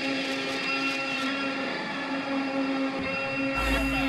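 A steady whirring drone with several held tones and no beat. A low thump comes about three and a half seconds in.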